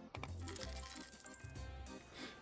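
Online slot game's win sound effect: clinking coin chimes that begin suddenly as the win is tallied, over the game's background music.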